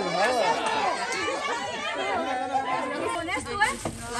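A group of people talking over one another: lively overlapping chatter with no single clear voice.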